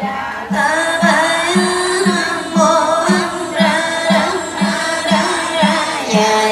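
Vietnamese Buddhist sutra chanting sung to a melody, with voices gliding between notes over a steady low beat about twice a second.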